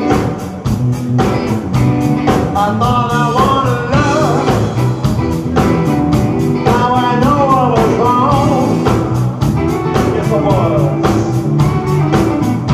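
Live blues-rock band playing a dance number: drums keep a steady beat under electric guitars and bass, while a lead line bends and wavers in pitch, played on a harmonica cupped against a hand-held microphone.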